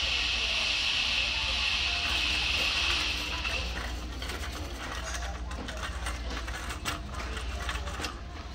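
A steady high hiss that stops about three and a half seconds in, then the rattling clicks of a plastic shopping cart being pushed along over a store floor, over a low steady hum.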